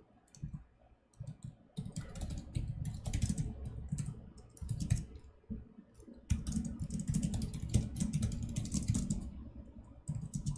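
Typing on a computer keyboard in quick runs of keystrokes. It is sparse for the first second or two, then dense, with a short pause a little past five seconds and another near the end.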